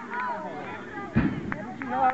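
Several high-pitched children's voices calling and chattering at once, with one loud, low thump just over a second in.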